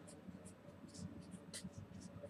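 Red marker pen writing on paper: a quick, irregular series of short, faint scratchy strokes as characters are written.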